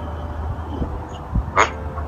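A pause in a man's talk over a low steady hum, broken by a short spoken "ha" near the end.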